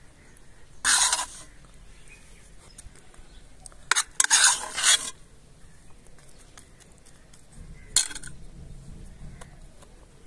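A spoon scraping chickpea filling out of a metal pressure-cooker pot: three short, harsh scrapes, the longest lasting about a second, around four seconds in.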